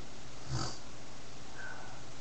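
A short, soft breath through the nose by the reader, about half a second in, over a steady hiss of background noise.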